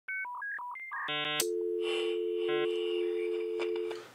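Telephone keypad tones dialing a quick run of about six digits, then a few short buzzy beeps. After that a steady low telephone tone holds and fades just before the end, with one more short beep partway through.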